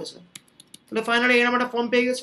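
Speech, with a few light clicks from a computer keyboard being tapped in a short pause about half a second in.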